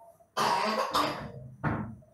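A person coughing three times in quick succession, the last cough shortest.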